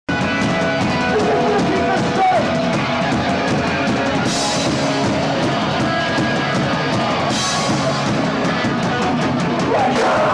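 Punk band playing live at full volume: distorted electric guitars, bass and fast drums, with crash cymbals ringing out about four seconds in and again about seven seconds in.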